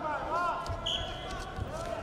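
Thuds of wrestlers' feet stepping and pushing on the mat during hand-fighting, two low thumps about a second apart, with shouted voices in a large hall.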